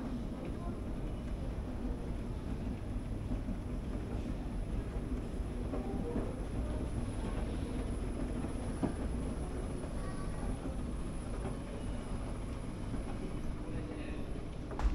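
Moving escalator in a subway station, a steady low rumble under the station's background noise, with faint voices in the distance.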